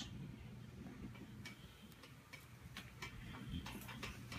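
Faint ticking, short clicks roughly two or three a second, over a low steady hum.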